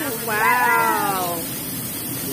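A diner's long, high-pitched exclamation of delight, falling in pitch over about a second, over the steady hiss of the hibachi griddle flame.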